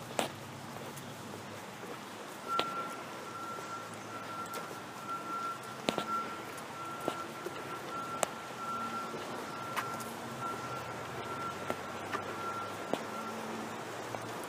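Occasional sharp clicks and clinks from footsteps on wooden decking and the metal prong collar and chain leash. Under them runs a faint, steady, high, slightly pulsing tone that starts about two seconds in and stops shortly before the end.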